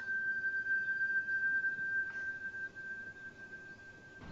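A single steady high-pitched tone held without change, like a sustained note in a drama score, fading away near the end over a faint hiss.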